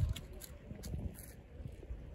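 Low, uneven rumble of wind on the microphone, with faint voices in the background.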